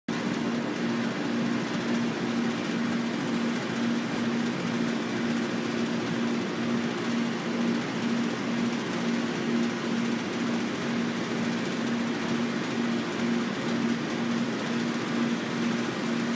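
A steady mechanical hum with a faint regular pulse, over a constant rushing noise.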